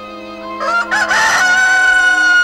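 A rooster's cock-a-doodle-doo starts about half a second in. It climbs in short steps and ends on a long held note, over soft background music.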